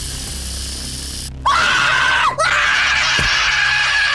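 A cartoon character's voice hissing with bared teeth, then letting out two loud, strained screeches, the second held for over two seconds.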